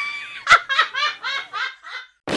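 A woman laughing in a high cartoon voice: a drawn-out opening, a sharp click about half a second in, then a quick run of 'ha' syllables, about six or seven a second.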